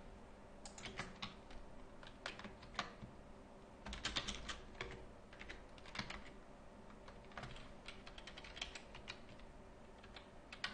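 Typing on a computer keyboard: irregular runs of key clicks, with a quicker flurry about four seconds in.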